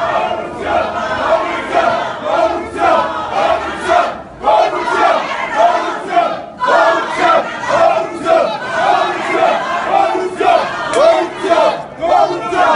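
Crowd shouting a loud chant together, many voices rising and falling in a regular beat, with short breaks about four and six and a half seconds in.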